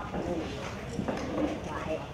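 People talking, with a few short knocks or clicks among the voices.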